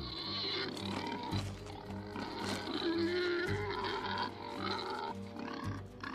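Young wild boars grunting and squealing as they spar, heard over background music with long held notes.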